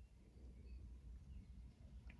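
Near silence: room tone with a faint steady low hum and a few very faint, brief high chirps.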